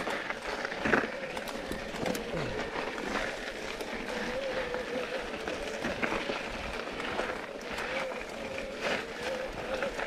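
Mountain bike tyres rolling and crunching slowly up a loose dirt climb, with scattered clicks and ticks of grit and drivetrain and a faint, slightly wavering whine underneath.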